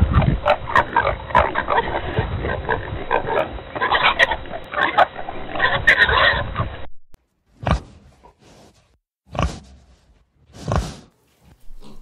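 Pigs grunting in a dense, continuous run for about seven seconds, then three short, separate grunts.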